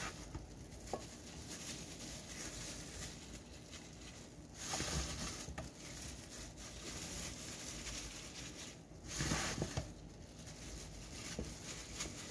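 Gloved hands handling marinated chicken and spiced potato slices in a glass bowl: soft wet squishing and the crinkle of thin plastic gloves, with a few small clicks and two louder handfuls about five and nine seconds in.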